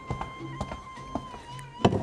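Quiet background music holding a steady high note over a soft repeating low note, with a few light taps and one sharper knock near the end.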